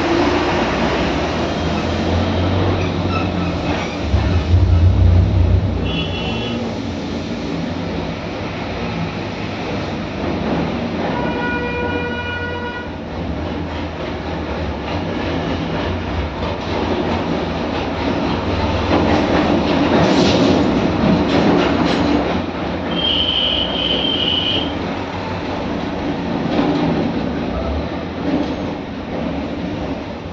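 Steady rumble and hiss of passing vehicles, with a horn sounding for about two seconds some eleven seconds in and short high beeps around six seconds and again near twenty-four seconds.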